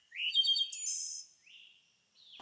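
Songbirds chirping: a few quick high chirps and a short buzzy trill in the first second, then a single rising chirp about a second and a half in.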